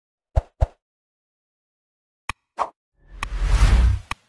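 Sound effects for an animated like-and-subscribe button graphic. Two quick pops come close together, then a click and another pop a little over two seconds in. In the last second a whoosh with a deep rumble builds and is the loudest sound.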